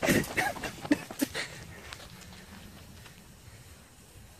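Hurried footsteps, a quick run of steps over the first second and a half, moving away from a lit firework fuse; then only faint outdoor background.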